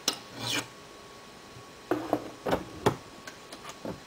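A flat file scraping across the hardened top of a rifle trim die, filing the protruding brass neck of a 30-06 case flush as it is trimmed for 270 Winchester. There is a click and a short file stroke at the start, several more scrapes and clinks around the middle, and lighter clicks near the end.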